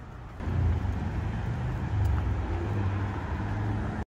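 Road traffic rumbling, a vehicle engine's low drone, which gets louder about half a second in and cuts off suddenly at the end.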